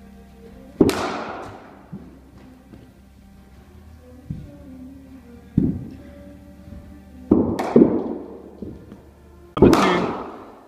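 Cricket bat hitting the ball in an indoor net: sharp cracks that ring in the hall, the loudest about a second in and just before the end, with smaller knocks between. Faint background music runs underneath.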